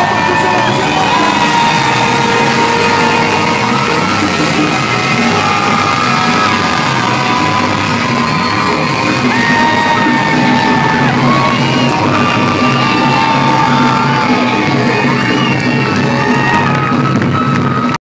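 Live soul band playing loudly with no vocals: guitars, congas, drums and bass under sustained lead notes that slide up into pitch and hold.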